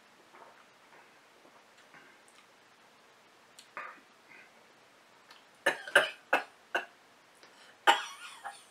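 A man coughing: four short, sharp coughs in quick succession, then one more near the end. They follow a sip of strong, fiery ginger beer.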